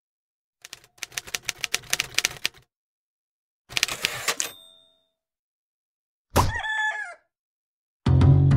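Intro sound effects: a rapid run of typewriter-like key clicks, a second short burst of clicks ending in a brief bell ring, then, near the end, one short crow like a rooster's.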